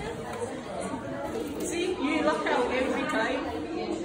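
Indistinct chatter of several people talking in a room.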